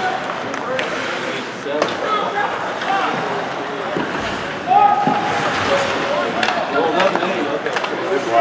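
Spectators' voices in a sparse ice hockey arena, with a raised call a little past halfway, over sharp clacks from play on the ice.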